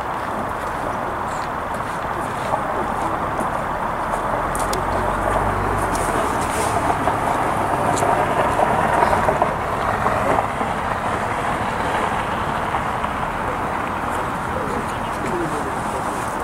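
Indistinct murmur of voices over a steady outdoor noise, with a brief low rumble about five seconds in.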